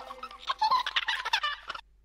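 A small child's giggle loop, pitched up with a helium vocal effect and run through echo, in quick high-pitched bursts that cut off suddenly near the end. It opens on the fading tail of a sung note.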